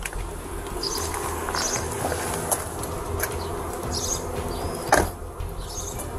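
Steady outdoor background noise picked up by a body-worn camera, with a few short, high bird chirps and a sharp knock about five seconds in.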